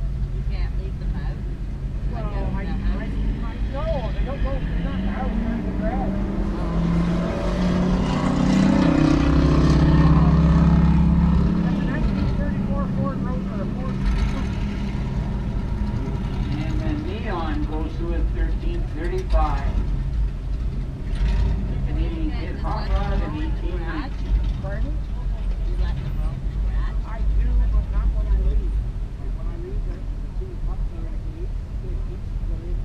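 Drag cars' engines rumbling in the staging line-up, one engine revving louder for a few seconds in the middle before settling back, with people talking nearby.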